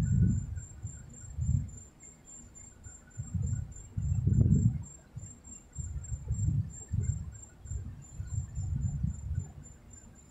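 A finger scratching and rubbing a paper scratch-off lottery ticket on a table, heard as muffled, low rubbing strokes in irregular bursts, loudest about halfway through.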